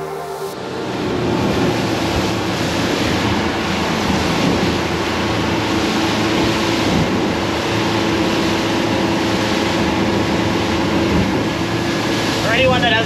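Kevlacat 2400 power catamaran running at speed: a steady engine drone under the rush of wind and water along the hull. It comes up over the first second or so, then holds steady.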